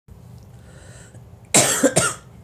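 A person coughing: one loud cough about one and a half seconds in, followed at once by a shorter second one, over a faint steady hum.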